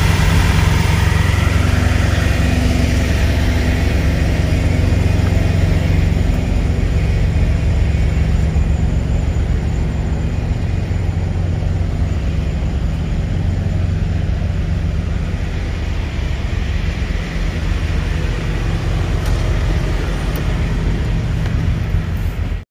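Semi truck's diesel engine idling: a steady, even low rumble.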